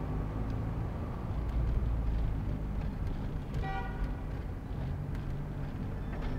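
Steady low rumble of city traffic heard from inside a moving car, with one short car-horn toot a little past halfway.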